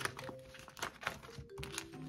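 Paper banknotes and a clear plastic binder pocket crinkling and rustling as cash is slid into the sleeve, with a few short sharp rustles. Soft background music with held notes plays under it.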